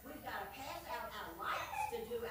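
High-pitched voices of young children.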